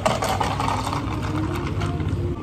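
Chocolate drink poured from a plastic shaker into a tall plastic cup, the pitch of the pour rising as the cup fills, over a steady low machine hum.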